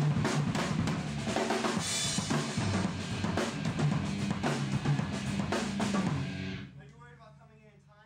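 Rock drum kit played busily, with kick, snare and cymbals, over sustained low bass notes in a studio jam. The playing stops about six and a half seconds in.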